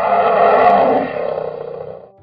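A deep animal roar sound effect, at its loudest in the first second and then fading away over about two seconds. It is heard where the story has Daddy Bear giving out a loud roar.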